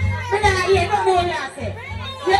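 Dancehall deejay chanting into a microphone over a riddim with a heavy, regular bass beat, heard through a loud PA sound system.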